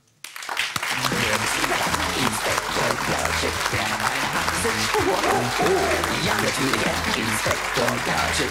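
Studio audience applauding, starting suddenly about a quarter second in, over music with a steady, repeating bass line.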